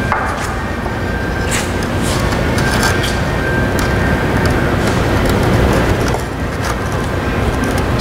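Steady, loud running noise of shop machinery, with a few light knocks as the stone slabs are handled.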